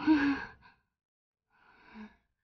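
A woman's short, soft voiced sigh in her sleep, with a slightly falling pitch, followed near the end by a faint breath.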